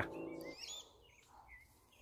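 Faint bird chirps: a few short, curving calls about half a second to a second and a half in, over a quiet background.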